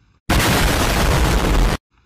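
A loud, harsh blast of noise edited into the soundtrack, like static or a distorted explosion. It starts suddenly about a quarter of a second in, holds steady for about a second and a half, then cuts off abruptly.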